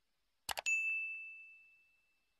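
Sound effects of a subscribe-button animation: two quick mouse clicks about half a second in, then a single bright notification-bell ding that rings out and fades over about a second and a half.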